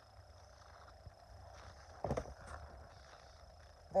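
Faint steady low hum inside a truck cab, with one brief rustle about two seconds in.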